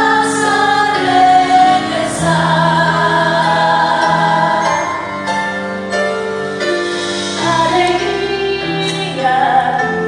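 A musical-theatre cast, mostly women's voices, singing a slow song together in long held chords over instrumental accompaniment.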